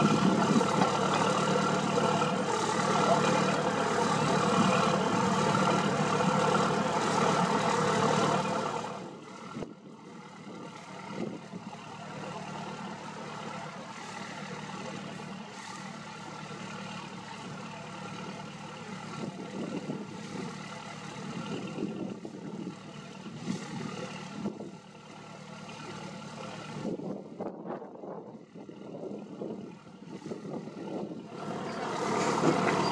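Engine running steadily with a low hum, loud for the first nine seconds, then dropping off suddenly to a quieter engine hum with a few light knocks.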